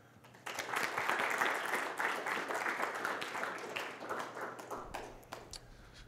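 Audience applauding. The applause starts about half a second in, then thins out to scattered claps before it stops.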